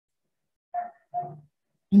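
Two short barks about half a second apart, quieter than the speech around them.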